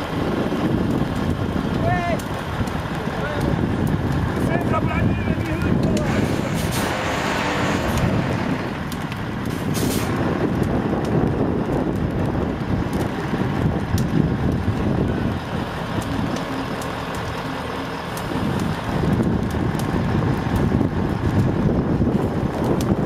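Fire tender's engine running steadily, driving its pump to feed water to the hoses, with short shouts over it and a brief hiss about seven seconds in.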